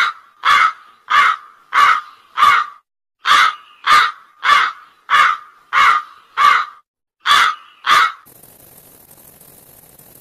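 A short call repeated about a dozen times in quick succession, roughly every 0.6 seconds with two brief pauses, stopping a little after 8 seconds in and leaving a faint hiss.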